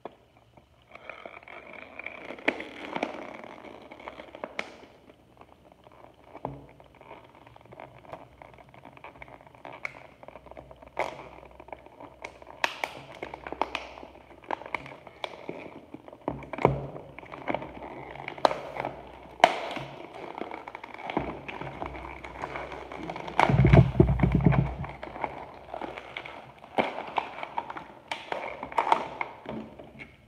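Stiff clear plastic blister packaging of a Beyblade Burst toy being handled and pried open by hand: irregular crackling and sharp clicks of the plastic shell. A louder rumbling thump of handling comes about four-fifths of the way through.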